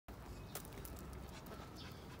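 Faint footsteps on brick paving: a few light clicks over a quiet outdoor background.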